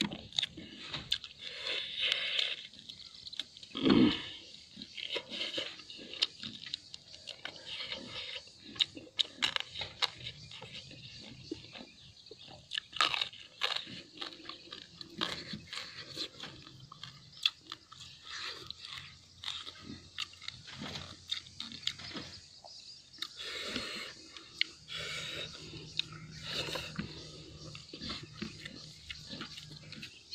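Close-up eating sounds: a man chewing and crunching food taken by hand, with many short crunches and mouth clicks throughout. One louder thump about four seconds in.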